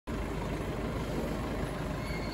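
Steady street noise with a continuous low rumble.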